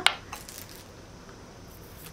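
A sharp light clink near the start and a fainter one just after, from small cheese-board utensils being handled in their packaging. Then only quiet room tone.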